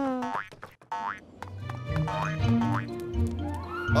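Cartoon sound effects: quick springy 'boing' pitch glides and light clicks in the first second, as a small character hops. Bouncy children's background music with a bass line follows.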